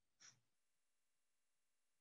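Near silence, broken by one faint, brief breath sound about a quarter of a second in.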